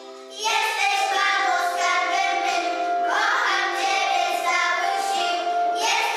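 A group of young children singing a song together with instrumental accompaniment, the voices coming in loudly about half a second in after a held note dies away.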